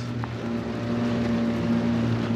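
Small boat's motor running with a steady hum while the boat is under way, over a rushing of wind and water.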